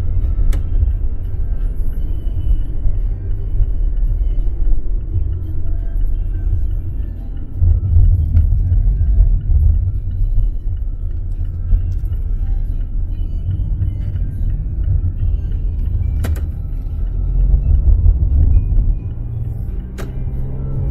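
Steady low rumble of a car being driven, heard from inside the cabin: road and engine noise.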